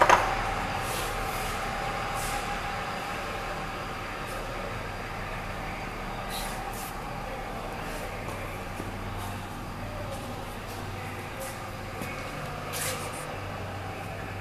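Steady low mechanical hum of running shop machinery, with a light knock about six seconds in and another near the end.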